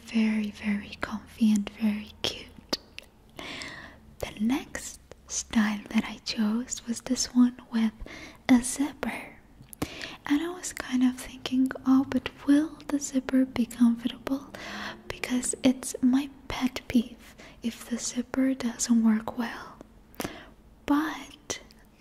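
A woman speaking softly and close to the microphone, in an ASMR-style near-whisper, with short pauses between phrases.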